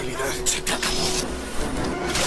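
Action-movie soundtrack: a dense, noisy, vehicle-like rumble of sound effects, with voices mixed in.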